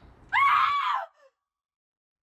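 A single high-pitched human scream, under a second long, rising then falling in pitch and cut off sharply into dead silence.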